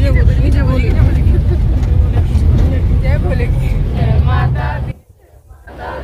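Steady low engine and road rumble of a shared jeep taxi, heard from inside the packed cabin, with passengers talking over it. The sound drops out suddenly about five seconds in, then the rumble returns.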